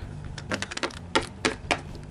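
A quick, irregular run of sharp clicks from a hard plastic Littlest Pet Shop figurine being tapped and handled on the set's floor as it is moved along, starting about half a second in.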